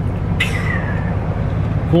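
Vehicle engine idling, heard from inside the cab as a steady low hum. A short high falling squeak comes about half a second in.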